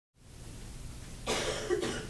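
A low steady room hum, then a single cough a little over a second in.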